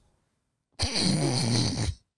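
A young man's breathy laugh, lasting about a second, starting a little under a second in.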